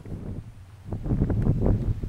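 Wind buffeting an outdoor microphone: a low rumble that grows rougher and louder about halfway through.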